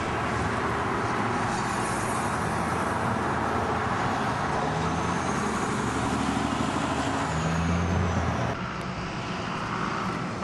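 Road traffic noise from passing cars and trucks. A vehicle's engine hum builds and is loudest about eight seconds in, then drops away.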